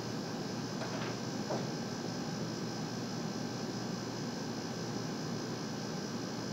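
Steady background hiss of a small room, with a couple of faint soft clicks about a second in.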